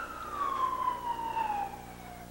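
A siren wailing, one long tone sliding slowly down in pitch, over a steady low hum.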